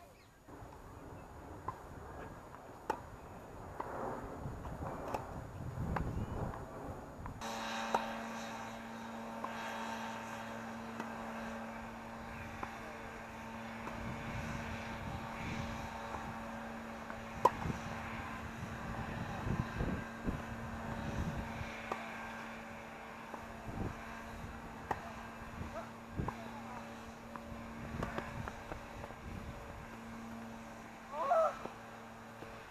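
Tennis balls struck by rackets in a rally on an outdoor court: scattered sharp pocks over outdoor background noise. About seven seconds in, the background changes abruptly and a steady hum sets in.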